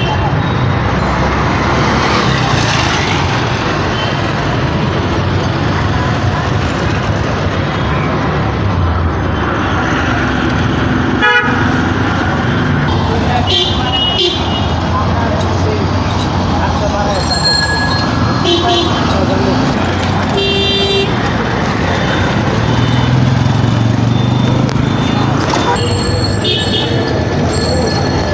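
City street traffic heard from a moving vehicle: steady road noise, with several short vehicle horn toots from about halfway on and a single sharp knock a little before.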